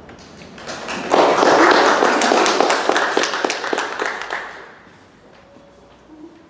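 Small audience applauding, starting about a second in and dying away over the following few seconds.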